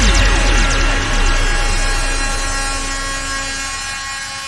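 Fading outro of a ragga drum-and-bass track: no drums, just a run of repeated falling electronic sweeps echoing away over held tones and a deep bass, the whole steadily dying out.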